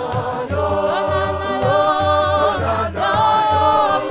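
Church choir singing a gospel song in several-part harmony, voices holding and sliding between notes over a low, steady beat.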